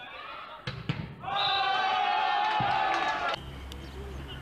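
A volleyball is struck sharply twice, with voices around it. Then a loud held cry lasts about two seconds and cuts off suddenly.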